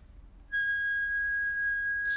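A flute enters sharply about half a second in with one long, steady high note.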